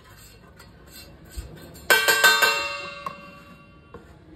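A stainless steel spoon clatters against a steel plate about two seconds in, a few quick metal hits that set the plate ringing and fading away over a second or so. Before that, only faint scraping as the spoon spreads ghee over the plate.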